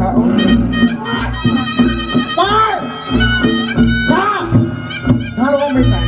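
Reog Ponorogo accompaniment music: a slompret, the Javanese shawm, plays a reedy melody with sliding, arching notes over drumming and deep, pulsing bass.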